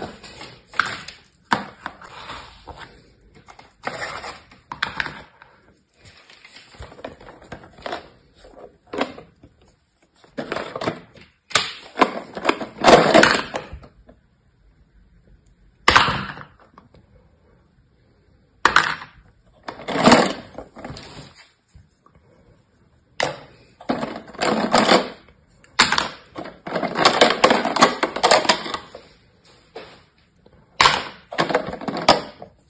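Hard plastic sand moulds and toys handled over a plastic tray of kinetic sand: pressed into the sand, set down and knocked together, with a plastic jar of moulds rattled near the end. The sound comes in irregular bursts of scraping and clatter with sharp knocks, and there is a quiet stretch about halfway through.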